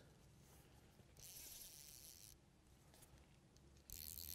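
Near silence, with a faint hiss for about a second.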